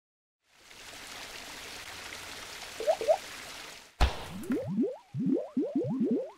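Logo-animation sound effects: a steady hiss like running water with two quick bloops, then a sharp click about four seconds in and a run of short rising bloops like water drops, several a second.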